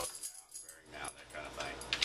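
A man's voice in brief, quiet fragments, with a few light clicks.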